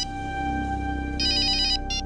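Mobile phone ringing: an electronic trilling ringtone in repeated bursts of about half a second, one ending at the start, another about a second in and a short one near the end, over a sustained background music drone.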